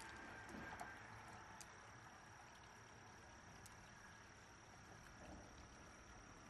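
Near silence: a faint outdoor background with a thin, steady, high insect drone and a few faint small clicks.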